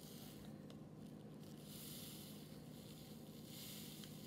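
Faint rustling and trickling of dry crystals poured from a small plastic packet into a plastic ball mould, coming in two short spells.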